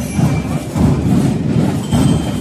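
A marching band's drum line playing a steady, pulsing beat on bass drums and cymbals, with a few faint high ringing notes from bell lyres.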